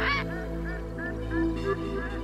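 A bird calling in a quick series of short rising-and-falling notes, about three a second, over soft background music.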